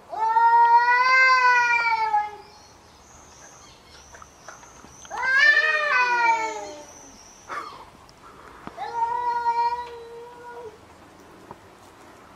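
Domestic cat yowling in a face-off with another cat: three long, drawn-out threat calls of about two seconds each, the middle one sliding down in pitch.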